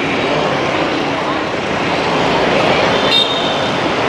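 City street traffic at night: a steady wash of passing motorbikes and cars. There is a brief high-pitched beep about three seconds in.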